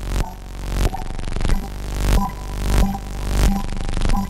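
Electronic background music with a steady beat, about three beats every two seconds, over held synth notes and a heavy bass.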